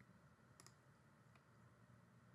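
Near silence: room tone with a few faint clicks, a close pair about half a second in and one more about a second and a half in.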